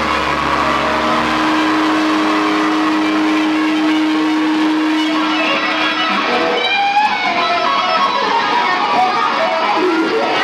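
Rock music led by electric guitar, with one long held note through the first half, then short notes sliding in pitch in the second half.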